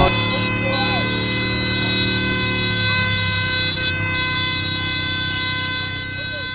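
A held synth chord, several steady tones sounding together after the drums and bass drop out, as the song ends.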